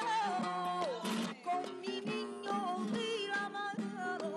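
A woman singing flamenco with a long, wavering, ornamented line that falls about a second in, over strummed Spanish guitar chords.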